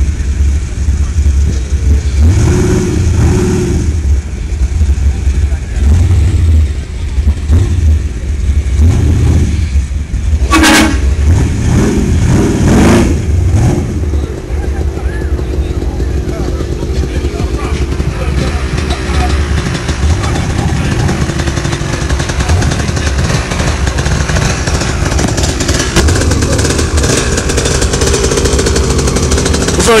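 Vehicle engines running close by, a steady low rumble, with people talking over it.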